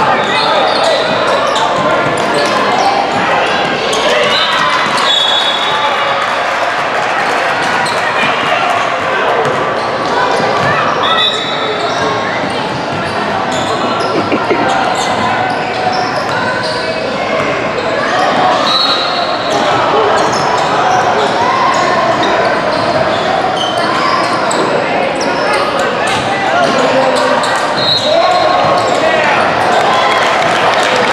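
Basketball being dribbled and bounced on a hardwood gym floor during play, under the indistinct voices of players and onlookers.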